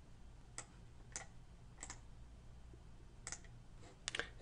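Four faint computer mouse clicks, spaced irregularly, over a low steady room hum.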